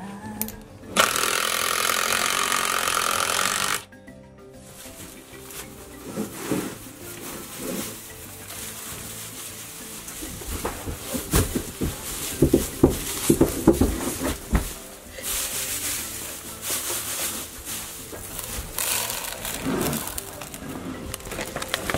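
A cordless drill runs for about three seconds, driving a screw into wood; it starts about a second in and stops abruptly. Background music follows, with scattered knocks and rustles.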